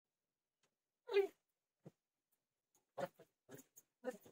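A single short cat meow about a second in, then a few faint brief sounds near the end.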